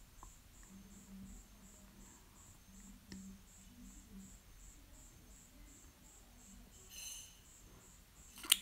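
Near silence, with a faint high-pitched chirp repeating evenly about three times a second over a soft low hum; the chirps are a little stronger near the end.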